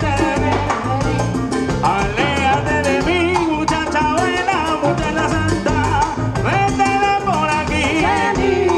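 Live salsa band playing, with congas, drum kit and electric bass under sung vocals.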